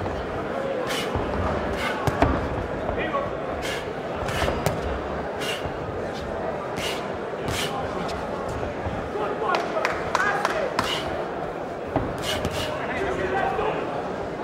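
Crowd noise in a boxing arena, voices calling out, with a run of sharp smacks scattered through it from gloved punches landing, thickest in a flurry about two-thirds of the way in.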